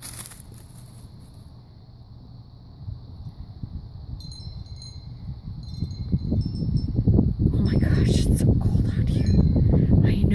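Light, high tinkling chime tones, clearest a few seconds in, over a low rumble on the microphone that builds to its loudest in the second half.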